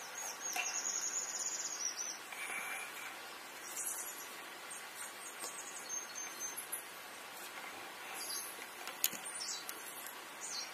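Small birds chirping in the background: a high trill in the first two seconds, then scattered short chirps at different pitches over a faint hiss. There is a single click near the end.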